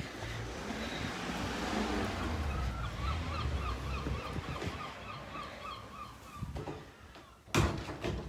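A gull calling a quick run of repeated short yelping notes, about four a second, over a faint steady hiss, then a loud thump near the end.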